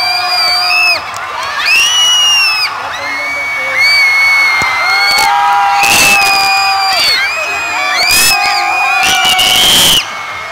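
Crowd of spectators cheering on swimmers during a relay race: a loud mix of high-pitched shouts and yells, many held for about a second each, overlapping one after another, swelling louder about six seconds in and again at the end.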